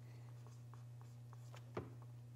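Dry-erase marker writing on a whiteboard: faint short strokes, with one louder tick near the end, over a steady low hum.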